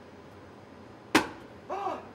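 A leather boot holding a wine bottle struck once against a brick wall: a single sharp knock about halfway through. Each blow drives the wine against the cork and pushes it a little further out of the neck.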